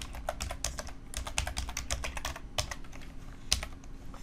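Typing on a computer keyboard: quick runs of sharp key clicks with short pauses, the last couple of keystrokes near the end.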